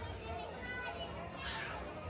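Indistinct chatter of diners in a busy restaurant, with a child's high voice rising briefly about a second and a half in.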